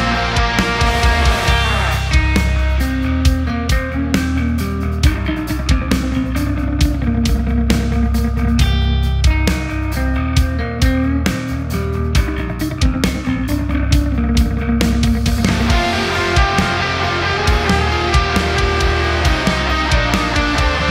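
Electric guitar through an MXR Carbon Copy Deluxe analog delay and a Mesa Boogie JP2C amp, playing a rock tune over a steady beat with drum hits. The heavy part thins to a sparser passage about two seconds in, and the big guitars come back in near the end.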